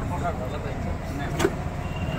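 Steady low rumble of a vehicle in motion, heard from inside its small passenger cabin, with a sharp click about one and a half seconds in.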